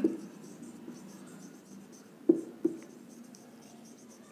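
Marker pen writing on a whiteboard: faint strokes of the felt tip across the board, with two brief louder sounds a little past halfway.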